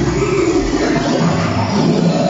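Live electronic music from a laptop setup: a thick, noisy texture with no clear melody, and a low rumble coming in at the start.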